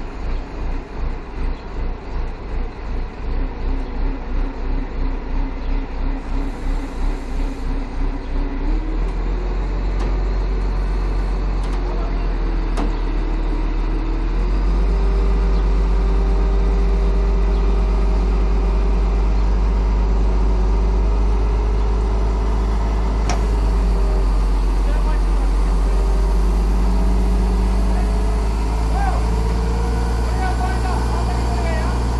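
Diesel engine of a truck-mounted crane running under load as it hoists a backhoe loader. At first it is a pulsing beat of about two to three throbs a second, then a steady low drone that grows louder about fourteen seconds in.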